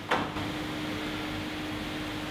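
Room tone of a lecture hall: a steady low hum with an even hiss, and one short, sharp noise just after the start.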